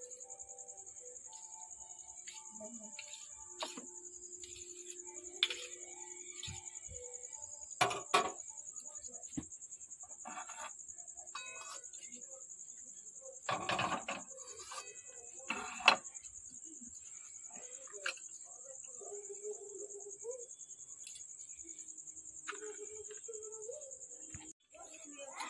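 Metal spatula scraping and clinking against a steel wok and a steel plate: scattered sharp clinks and a couple of short scrapes, the loudest about a third and two-thirds of the way through, over a steady high-pitched whine.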